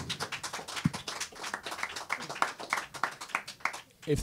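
Several people clapping in a room, an irregular patter of claps that goes on for a few seconds.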